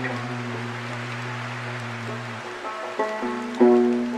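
Slow banjo playing over a steady hiss of rain, the plucked notes ringing on. A low note is held through the first half, a few notes follow about three seconds in, and a louder chord is struck near the end.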